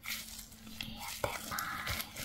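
Close, soft whispering, with a nitrile glove rustling and crinkling in the hands. The crinkling grows denser near the end.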